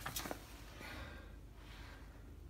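A few faint clicks and rustles of something being handled near the start, then quiet room tone.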